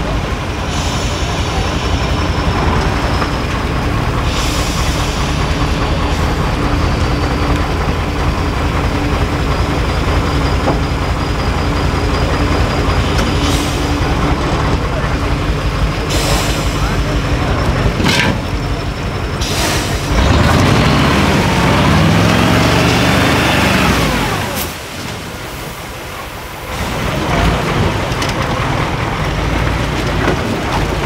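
Six-wheel-drive trial truck's diesel engine running under heavy load as it crawls through a muddy pit, with several short hisses of air. About two-thirds of the way through the engine revs up and back down, then drops quieter for a couple of seconds before picking up again.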